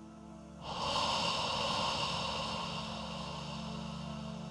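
Synthesizer film-score music on a Yamaha Montage: a held, sustained pad chord. A breathy, hissing swell enters sharply just over half a second in, then slowly fades over the held chord.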